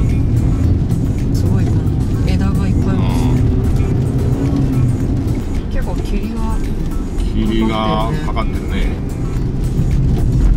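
In-cabin sound of a Toyota RAV4's petrol engine and tyres pulling up a steep 10% grade on a wet mountain road: a steady low rumble, with background music and brief voice sounds over it.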